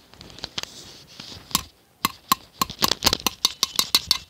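Sharp clicks of hard objects being tapped: a few scattered ones at first, then a quick run of about six or seven a second over the last two seconds.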